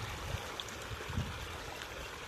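Steady splashing and churning of water as a dense shoal of pangasius feeds at the pond surface, with a couple of brief low thuds, the strongest about a second in.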